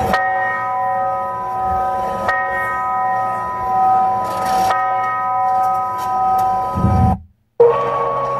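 Background music with a bell-like chord struck three times, about two and a half seconds apart, each ringing on steadily. The sound cuts out briefly near the end, then a new held tone begins.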